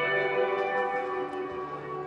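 A band's instrumental intro, played live: sustained guitar chords ringing on, with no singing.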